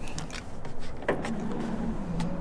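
Ford F-150 power tailgate closing: a click about a second in, then a steady electric motor hum as the tailgate lifts shut.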